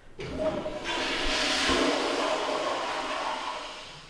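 A toilet flushing: a rush of water that swells in about a second in, then fades away over the next couple of seconds.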